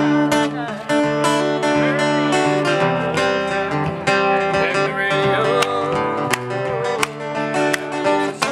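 Live country band playing an instrumental passage, led by a strummed acoustic guitar with other instruments sustaining chords beneath it.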